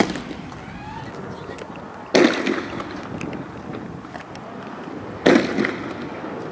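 Two loud bangs about three seconds apart, each with a short echoing tail: riot-control weapons firing during street clashes, with tear gas smoke in the air.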